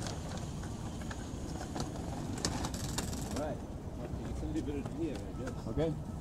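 A loaded hand truck rattling and clicking over sidewalk pavement, with steady city street traffic noise. Voices are heard in the second half.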